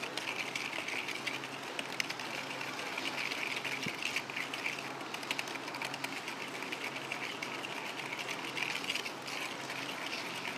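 A whisk scraping and clicking rapidly and steadily against a mixing bowl as curd and brown sugar are beaten together to dissolve the sugar.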